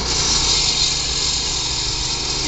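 Walk-behind concrete saw running steadily, its engine note under a constant hiss from the blade cutting joints into freshly poured concrete slabs.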